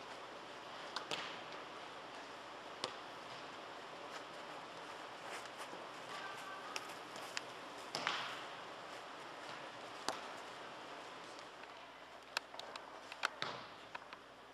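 Soccer ball being kicked on indoor turf: a handful of sharp thuds over a steady hall noise, the loudest about eight seconds in with an echo after it, and several more close together near the end.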